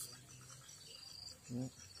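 Insects chirring in a steady high-pitched trill, with a short murmur from a man's voice about one and a half seconds in.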